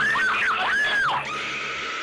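A boy's short high-pitched screams of fright, three quick cries in the first second or so, as a screamer prank video startles him; a steady high tone follows near the end.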